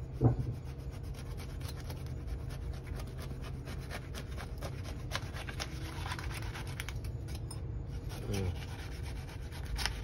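Kitchen knife sawing through the thick, spiky rind and dense flesh of a very ripe jackfruit, a dense run of uneven scratchy clicks and crunches as the blade works back and forth.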